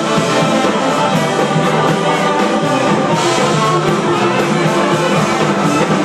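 Live band playing loudly and continuously: drum kit, electric guitar and a horn section with trombone and saxophone.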